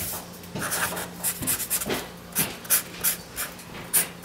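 Felt-tip marker drawing on paper: a quick run of short scratchy strokes, about two or three a second, with a faint steady low hum underneath.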